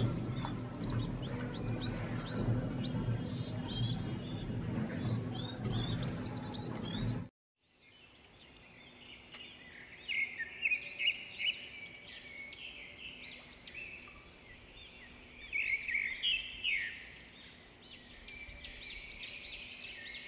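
Small birds chirping and twittering in quick runs of high, arching notes. At first they sound over a low steady hum. The sound cuts off suddenly about a third of the way in, then after a brief silence the chirping returns without the hum, loudest in two short clusters.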